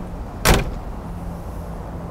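A car door shut with a single sharp thud about half a second in.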